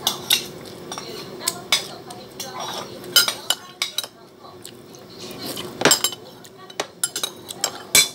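Metal spoon scraping and clinking against a ceramic bowl: a string of sharp clinks, the loudest about three seconds in and again near six seconds.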